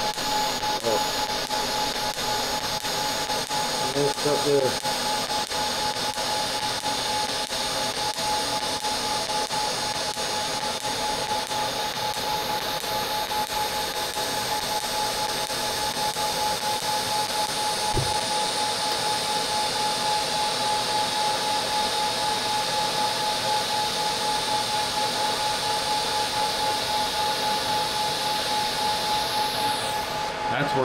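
Pulsed TIG welding arc on stainless steel tube, a steady hiss with a constant whine. The arc cuts off just before the end.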